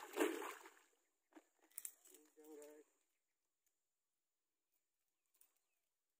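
Water splashing and sloshing as a hooked snakehead thrashes at the surface close to the bank, dying away within the first second.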